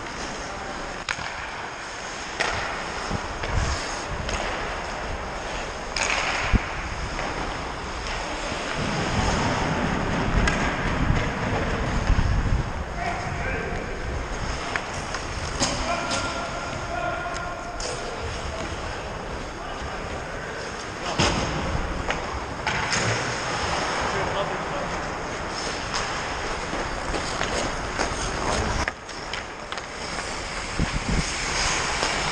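Ice hockey play heard from a skater's body camera: skate blades scraping and carving the ice as a steady rush of noise, with occasional sharp knocks of sticks and puck. Distant players' voices come and go.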